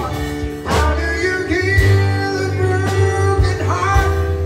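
Live band playing a slow song through a PA: electric keyboard and electric guitar over steady bass notes, with a singer on microphone.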